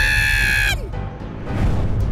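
A cartoon character's high-pitched, held yelp, lasting under a second and ending in a downward glide, over background music that carries on after it.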